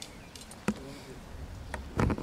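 Quiet outdoor background with a single sharp knock about two-thirds of a second in and a fainter tick near the end.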